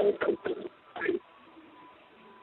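A bird cooing faintly behind a telephone line, after the tail end of a spoken phrase, with a faint steady tone under it.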